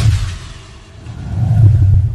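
Logo-intro sound effects: a sharp crackling strike at the start, trailing off in a hiss as the lightning bolt hits, then a deep rumble that swells to its loudest in the second half.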